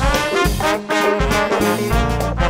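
Funk band playing live: the horn section of trombone, saxophone and trumpet plays together over bass and drums.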